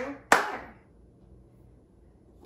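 Two sharp hand claps, one right at the start and one about a third of a second later, clapping out the syllables of spoken words.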